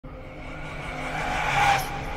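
A swelling whoosh sound effect: a noisy rising swell with faint steady tones that builds in loudness and peaks just before the end.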